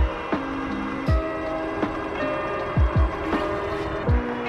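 Background music with a deep kick drum beat under sustained chords.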